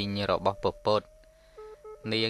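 A man speaking Khmer for about the first second, then a pause in which only a faint steady tone is heard, stepping down in pitch near the end.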